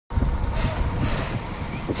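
C10 steam tank locomotive rolling slowly while shunting, with a low rumble from its wheels and running gear and a short hiss of steam exhaust about half a second in.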